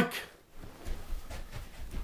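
Faint, irregular low thuds and rustling from someone moving quickly about a room.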